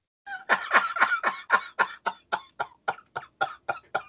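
A man laughing: a long run of quick, breathy bursts, about four a second.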